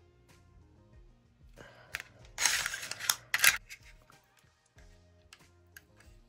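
Handling noise from an electric nail drill with a sanding band on its mandrel bit: a sharp click about two seconds in, then two short scraping rustles. It plays over quiet background music with held notes. The drill is not running.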